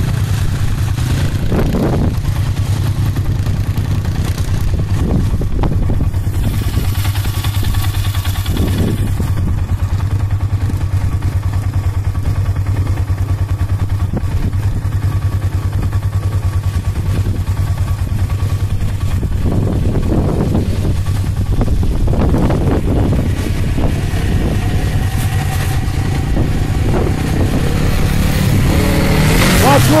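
ATV engine running as a four-wheeler is ridden across a grass field, a steady low rumble while it is far off. Near the end it passes close by, louder, with its pitch falling.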